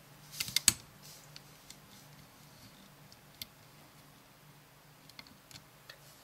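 A metal hook clicking against a plastic Rainbow Loom's pins and rubber bands as bands are hooked off a pin. There is a cluster of small clicks about half a second in, then a few faint scattered taps.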